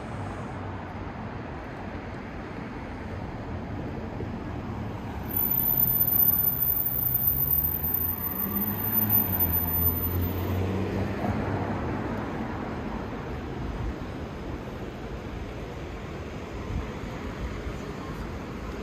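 Steady city street traffic noise, with a car passing close by: from about five seconds in its engine and tyres grow louder for several seconds, then fade back into the traffic hum.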